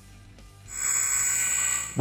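Short TV news transition sting: a bright, high, ringing chime-like sound that swells in about half a second in, holds steady for just over a second, then stops.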